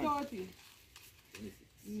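People talking in short fragments: a word trailing off at the start, a brief sound around the middle, and a held "mm" near the end, with a quiet pause of faint background noise between them.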